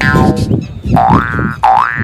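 Cartoon-style comic sound effect: a pitch that slides quickly upward and holds, heard twice, about a second in and again near the end, over background music.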